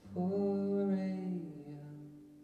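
Male voice singing one long held note over a quietly ringing acoustic guitar. The voice fades about three-quarters of the way through, and the guitar notes ring on.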